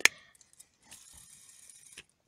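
Silicone bubble on a pop-it fidget spinner popped under a finger: one sharp, loud click right at the start. A faint steady high whir follows from about a second in, and a small click comes near the end.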